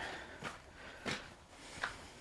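Faint footsteps on a dirt path, three soft steps about two-thirds of a second apart, over quiet outdoor background.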